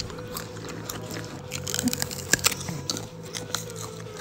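Close-miked ASMR eating sounds: crisp bites and crunching chews of crunchy food, a dense run of sharp crunches loudest about halfway through, over soft low background music.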